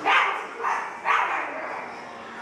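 A child imitating a dog, barking three times in quick succession.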